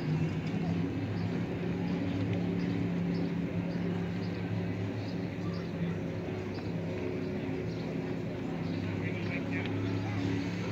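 Outdoor waterfront ambience: a steady low mechanical hum under indistinct background voices of people talking, with a few light clicks about nine seconds in.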